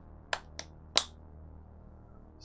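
Three short, sharp clicks within about a second, the last the loudest, over a faint steady low hum.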